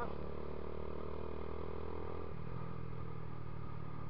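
Dafra Next 250 motorcycle engine running steadily while riding, with a slight change in its note a little over halfway through.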